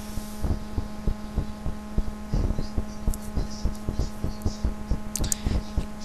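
Steady electrical hum from the recording setup, with a run of irregular low thumps and clicks over it.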